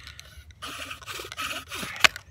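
Yucca spindle grinding in a yucca hearth board during a two-stick friction-fire drill: a run of quick back-and-forth rasping strokes, louder from about half a second in.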